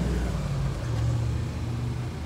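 Steady low hum of an idling car engine.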